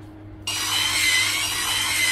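Drill-mounted sheet-metal cutting head, driven by a drill, cutting sheet metal. It starts about half a second in, with a steady high whine and hiss.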